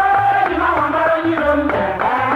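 Traditional Igbo women's song from Oguta: a group of voices chanting a melody over a steady beat of percussion.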